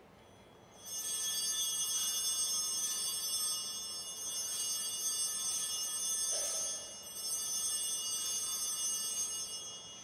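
Altar bells, a cluster of small hand bells, shaken in three rings, the ringing starting about a second in with a short break before the third ring: the signal for the elevation of the chalice at the consecration.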